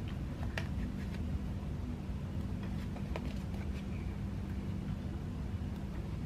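Quiet handling of a paper sticker sheet: a few soft clicks and rustles as small stickers are peeled off and pressed onto planner pages, over a steady low room hum.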